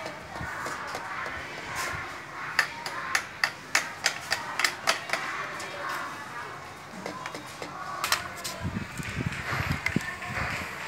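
Toy hammer tapping on a tricycle's rear wheel: a run of quick light taps, about three a second, through the first half, and a few more near the end.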